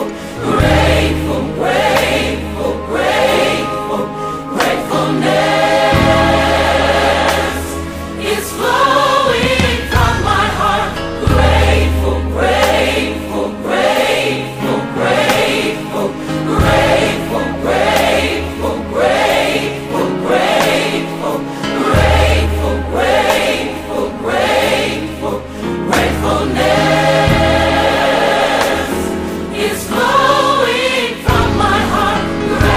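Gospel choir singing in steady, rhythmic phrases over instrumental backing with long held low bass notes.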